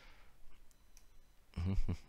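A few faint computer mouse clicks while scrolling a window.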